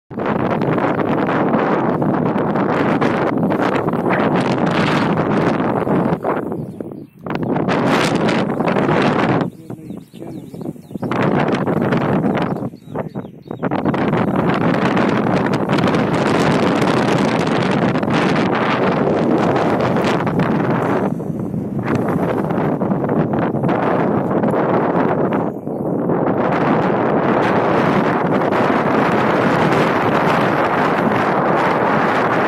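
Wind blowing hard across the microphone in loud gusts, with several brief lulls.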